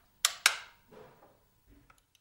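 AA batteries pressed into the plastic battery compartment of a HemoCue Hb 201+ analyzer: two sharp clicks about a quarter second apart, then a few faint taps.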